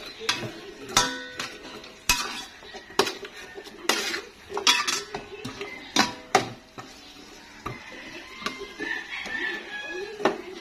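A metal spatula clanks and scrapes against a large pot while stirring diced carrots and potatoes. Sharp ringing knocks come about once a second, then soften for the last few seconds.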